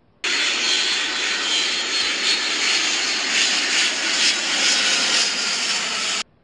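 Aircraft engine sound effect: a steady, loud noise with little bass that starts abruptly just after the start and cuts off suddenly at the end.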